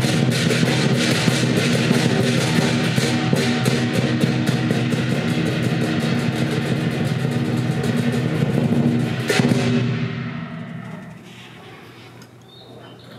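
Lion dance percussion: drum beaten with rapid strikes under clashing cymbals and a ringing gong. It stops on a final hit about nine seconds in, and the ringing fades away over the next two seconds.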